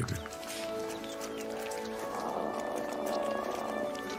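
Documentary score music with sustained tones. Over it come the sounds of lion cubs suckling from a lioness, thickest in the second half.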